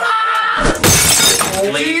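A loud shattering crash, about a second long, starting about half a second in, amid men laughing and talking.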